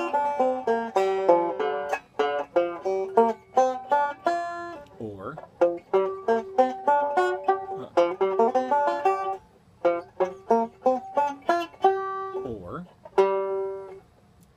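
Five-string resonator banjo picked in quick single-note runs through B-flat major pentatonic scale shapes, each plucked note ringing briefly. The runs stop for short breaks about five seconds in, around ten seconds and shortly before the end, and the playing stops at the end.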